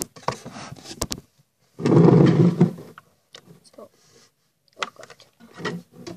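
Handling noise from objects being moved around a plastic tank: sharp clicks and knocks, with a loud rough rubbing rustle about two seconds in, then scattered small taps and rubs.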